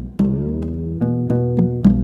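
Instrumental background music: a run of plucked string notes, each struck and fading, at an unhurried pace.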